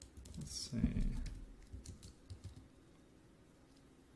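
Typing on a computer keyboard: a short run of keystrokes over the first two and a half seconds, with a brief low voice sound about a second in.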